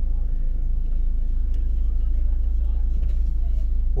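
Busy street-market ambience: a steady low rumble with faint crowd murmur beneath it.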